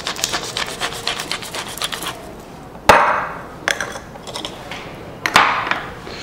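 Pepper mill grinding pepper over a bowl of shrimp: a run of rapid dry clicks for about two seconds, then a few separate knocks, the loudest about three seconds in.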